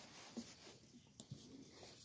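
Near silence with faint rustling and a few light taps: a paperback book handled and brought back to a library shelf.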